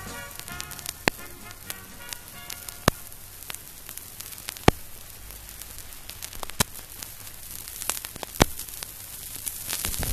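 Vinyl record surface noise in the silent groove between two songs: a steady hiss and crackle with a sharp click about every 1.8 seconds, a scratch coming round once per turn of a disc at 33⅓ rpm. The last notes of a song die away in the first couple of seconds.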